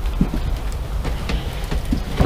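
Low rumbling handling noise from a handheld camera being carried along, with a few soft, irregular knocks like footsteps on a trailer floor.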